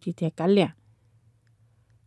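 A storyteller's voice speaking in Hmong for the first moment, then a pause of about a second and a half with only a faint low hum.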